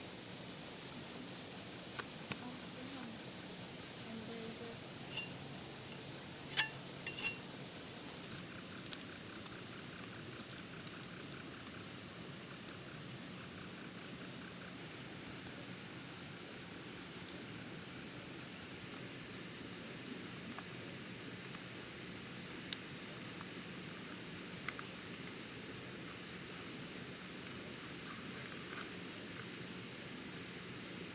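Crickets chirping in a steady, fast-pulsing high-pitched trill, with a second, lower pulsing call joining for several seconds in the middle. A few sharp clinks stand out, the loudest about six and a half seconds in.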